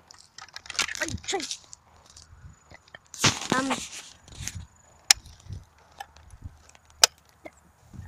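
Two sharp, very brief clicks about two seconds apart.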